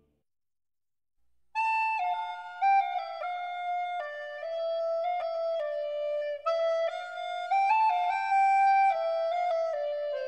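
Silence for about a second and a half, then a solo woodwind melody, flute-like: one unaccompanied line of held notes stepping up and down.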